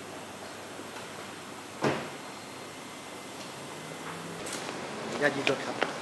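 A car door shutting once, a single sharp thump about two seconds in, over a steady background hiss.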